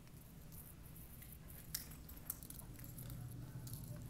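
Faint room tone with a low steady hum, and soft scattered clicks and rustles from a handheld camera being carried while walking. Two sharper ticks come a little before and a little after two seconds in.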